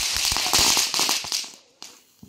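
Small ground firework spraying sparks, a crackling hiss full of rapid little pops that dies away about a second and a half in.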